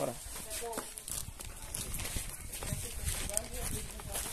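Footsteps on sandy ground with scattered knocks and clicks, and faint voices in the background.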